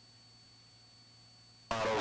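Near silence on a cockpit intercom feed, only a faint steady electrical hum and a thin high whine, until a voice cuts in abruptly near the end.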